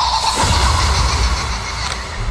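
Dark hardstyle track at a transition. Heavy low bass rumble sits under a hiss-like noise wash, with one falling-pitch hit about half a second in and no steady beat.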